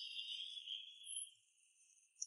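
Faint, high-pitched chirring of night insects such as crickets, which drops away about a second and a half in.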